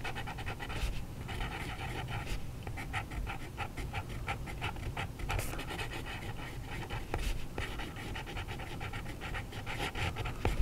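A fountain pen's medium steel nib (TWSBI ECO) scratching across paper in quick runs of strokes, with brief pauses between them.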